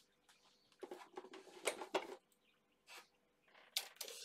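Faint rustling and a few small clicks of hands handling a plastic-bodied RC car among bubble-wrap packaging, with a sharper click near the end.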